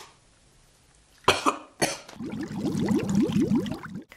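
A woman coughing twice sharply, then clearing her throat in a rasping run, after eating Flamin' Hot Cheetos that she says burned her mouth.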